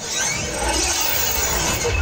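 Stage launch effect: a loud rushing hiss, with a deep rumble swelling underneath from about half a second in.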